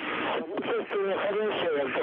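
Speech over a radio link: a voice on the communications loop, thin and narrow-sounding as through a radio.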